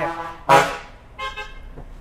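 Two short vehicle horn toots, the first about half a second in and the louder, the second weaker and a second later.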